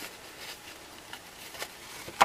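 Quiet handling of cardstock and ribbon: faint rustles and a few light clicks as the card is fed into a handheld stapler.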